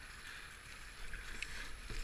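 Whitewater rushing and churning around a kayak running a river rapid, a steady noise with a low rumble underneath.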